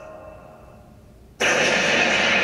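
A sound effect from an anime soundtrack: a few faint held tones, then a sudden loud rushing noise about one and a half seconds in that keeps going.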